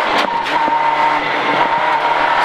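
Citroën Saxo rally car's engine running hard at steady high revs, heard from inside the cabin, with a couple of short sharp knocks just after the start.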